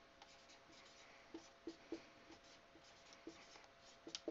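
Dry-erase marker writing on a whiteboard: a handful of faint, short strokes spread through the middle seconds.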